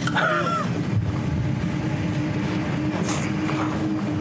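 A steady low rumbling drone with a held hum under it. Two short falling tones sound just after the start, and a brief hiss comes about three seconds in.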